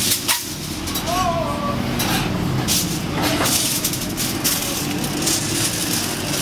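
Aluminium foil crinkling and rustling in irregular crackles as it is folded by hand around a burger, over a steady low background hum.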